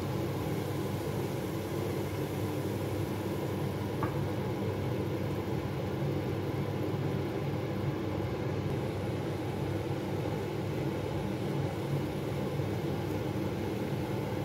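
A steady low mechanical hum, like a fan or motor running, unchanging throughout, with one faint tick about four seconds in.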